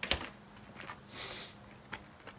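A few sharp clicks and small taps, the loudest just after the start, then a short high hiss a little past one second in.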